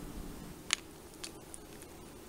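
Light handling clicks at a small backpacking gas stove: one sharp click under a second in, then a fainter click and a few tiny ticks of metal being moved, over a quiet background.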